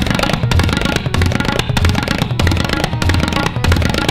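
Tabla solo: rapid, dense strokes on the dayan and bayan, with the bayan's low booms coming about twice a second, over a harmonium playing the sustained lehra accompaniment.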